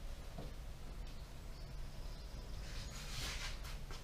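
Foam hand applicator pad rubbing polishing compound into a car's painted hood: a faint swishing that swells into a louder scrubbing stretch about three seconds in, over a low steady hum.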